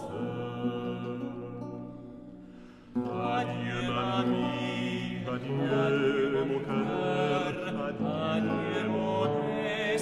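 Recorded early-music arrangement of a traditional French song, sung with period instruments. A held chord fades away over the first few seconds, then voice and instruments come back in sharply about three seconds in and carry on.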